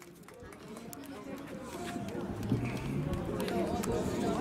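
Indistinct voices of people talking in the open air, fading in from silence at the start and growing louder, with scattered light clicks.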